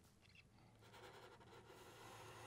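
Near silence, with faint scratching of a felt-tip marker drawing on paper.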